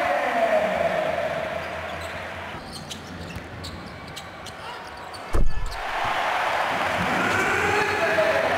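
Basketball arena game sound: crowd noise from the stands, with a ball bouncing on the hardwood court in the quieter middle stretch. A loud low thump comes about five seconds in, and the crowd noise swells again near the end.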